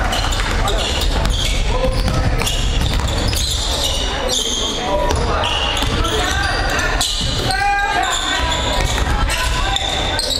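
Indoor basketball game: the ball dribbling on the hardwood court and sneakers squeaking in many short, high chirps as players move, over a steady hum of spectators talking and calling out.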